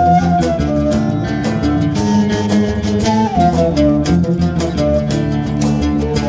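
Live ensemble playing an instrumental passage of Arabic-style music: electric guitar, percussion keeping a steady beat, and a melody line that slides between notes.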